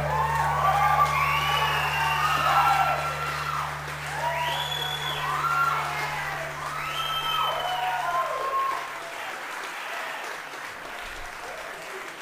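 Audience applauding and cheering after a live band's song ends, with shouts that rise and fall in pitch over the clapping. A low steady hum from the stage dies away about nine seconds in, and the applause thins out toward the end.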